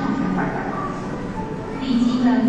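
A person's voice speaking faintly and in fragments over a steady low rumble and hiss.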